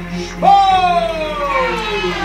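A ring announcer's voice drawing out a team name in one long call, starting about half a second in and falling steadily in pitch for about a second and a half, over background music.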